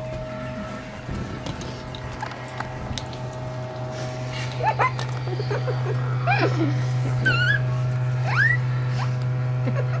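A steady low hum, with a run of short, high whining cries sliding up and down that starts about halfway through.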